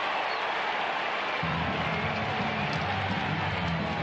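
Ballpark crowd noise, with stadium PA music starting about a second and a half in with a steady bass beat.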